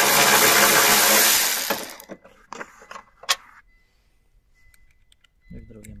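Yato YT-82902 12-volt cordless impact ratchet running on a bolt for about two seconds, then stopping; a few sharp clicks follow.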